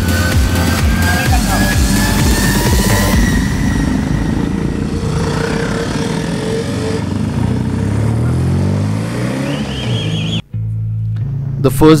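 Electronic dance music with a steady beat, fading after about three seconds into motorcycle engines rising in pitch as they accelerate. About ten seconds in, the sound cuts to a steady engine drone.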